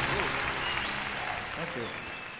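Concert audience applauding as a live song ends, the applause fading steadily away.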